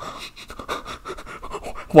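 A person's breath sounds, quiet and uneven, with no words.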